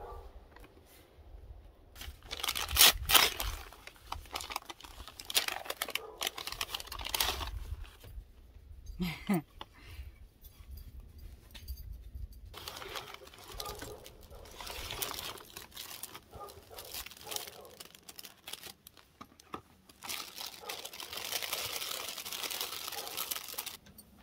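Brown kraft packing paper crinkling and crumpling in irregular bursts as a shipping box is unpacked. The loudest burst comes about three seconds in.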